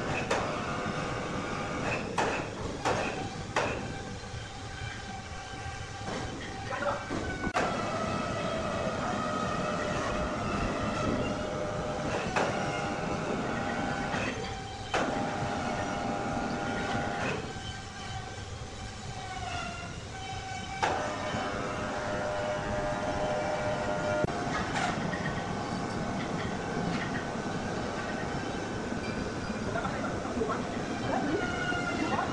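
Band sawmill running with a steady mechanical hum and whine whose pitch shifts a few times. Sharp knocks and clatter of heavy wood come through now and then.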